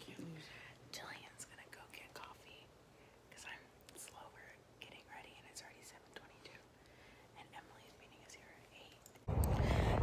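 Faint whispered talking by two women. Just over nine seconds in, it gives way suddenly to much louder outdoor sound.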